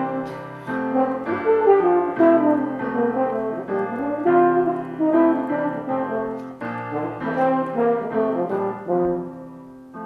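Instrumental music: a French horn playing a melody over chords on an electronic keyboard with a piano sound, no singing. The music thins out near the end.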